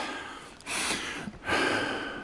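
A man breathing close to the microphone: two breaths without words, the first about half a second in and the second about a second and a half in.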